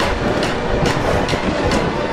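A rhythmic, heavy clatter of noisy hits, a little over two a second, over a low rumble: a mechanical, train-like rhythm in an edited soundtrack.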